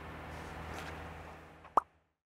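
Low steady background hum of the outdoor recording fading out, then a single short pop near the end: a sound effect of the animated logo end card.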